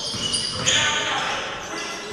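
Basketball court sounds in an echoing gym: a ball bouncing on the hardwood and short high sneaker squeaks, with voices calling out.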